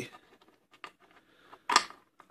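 Light metal clicks and handling as the brass bolt and lever are set back onto a Taylor Group 2 safe combination lock's case. One sharp click comes a little under halfway, and a louder one near the end.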